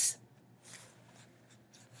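A few faint, brief soft rustles close to the microphone.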